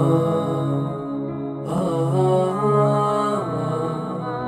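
Slow background music of long held notes, the chord changing about every second and a half.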